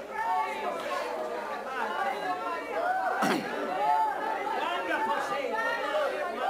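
A congregation praising aloud all at once: many voices calling out and overlapping, with one louder cry about three seconds in.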